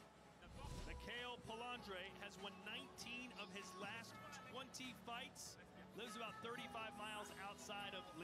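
Faint speech, low under the rest of the soundtrack, over a low steady hum.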